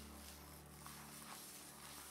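Near silence: faint room tone with a low hum that fades out in the first second, and a couple of very faint light ticks.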